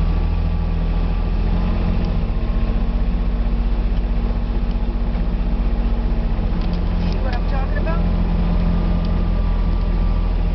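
Kubota utility vehicle's engine running steadily as it drives along at low speed, heard from inside the open cab as a loud, even low hum.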